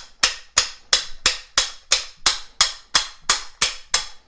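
Hammer striking the steel swaging tool in a rapid even series of sharp metallic blows, about three a second, driving it into the unheated end of a copper pipe. That end has not been softened by heating and barely starts to open.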